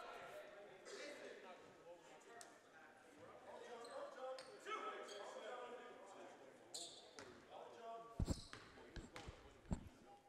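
A basketball bounced a few times on a hardwood gym floor near the end: a free-throw shooter's dribbles before the shot. Faint voices are in the background.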